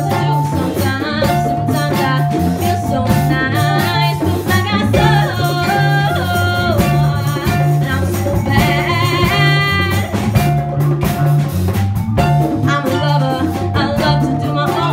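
A young woman singing live into a handheld microphone, accompanied by a school jazz band with a bass line pulsing underneath. Near the middle she holds one long note with vibrato.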